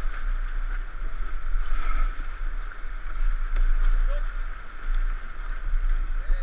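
Fast river water rushing past an inflatable raft, a steady hiss with a heavy low rumble from wind on the microphone.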